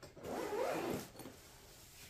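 Zipper of a padded soft gun case being pulled open, a rasp lasting about a second, followed by faint rustling of the case fabric.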